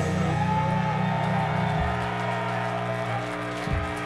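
Heavy metal band's closing notes: distorted guitars and bass hold long sustained notes that ring out and slowly fade. The low note shifts about two seconds in.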